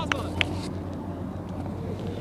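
Outdoor background at a match: a steady low rumble with faint voices, and two short sharp clicks within the first half second.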